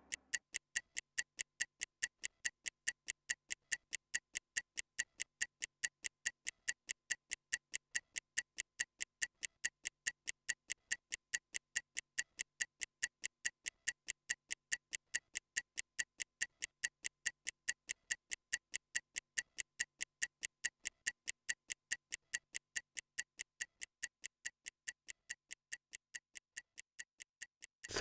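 Stopwatch ticking sound effect: rapid, evenly spaced ticks, several a second, timing a 30-second recovery period between exercises. The ticks grow a little fainter near the end.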